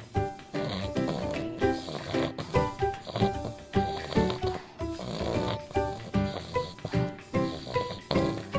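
Music with a steady beat, a little under two beats a second, and short bright melody notes.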